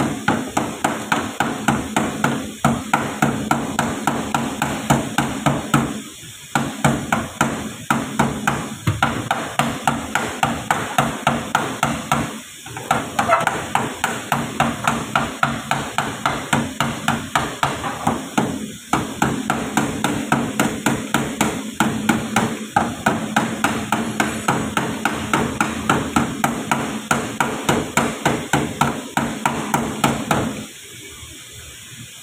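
Steady hand hammering, about three to four blows a second, with a few short breaks.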